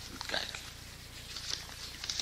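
Background of an old lecture recording between sentences: a steady low mains hum and hiss, with a few soft breathy noises.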